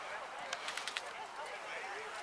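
Quiet voices talking in the background, with a quick run of five or six sharp clicks about half a second in.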